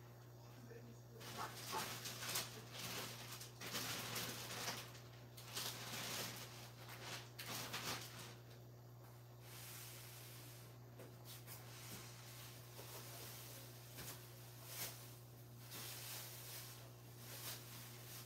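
Faint room sound while someone searches for something away from the microphone: a steady low hum under faint, irregular rustling and knocking.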